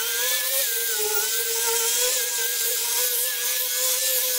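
Handheld electric disc sander running while its sanding disc is worked over a wooden board: a steady motor whine that wavers slightly in pitch, over the high hiss of the abrasive on the wood.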